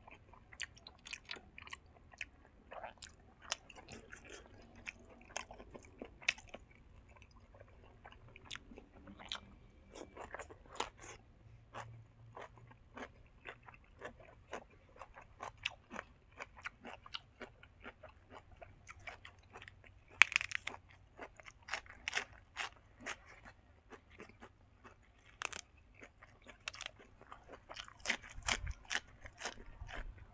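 A man chewing food with his mouth close to the microphone: irregular crisp crunches and wet mouth clicks, one of them loudest about two-thirds of the way through.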